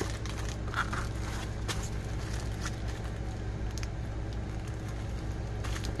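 Faint crinkling and ticking of a small plastic zip-top bag holding leftover diamond-painting drills as it is pressed shut along its seal and handled, over a steady low hum.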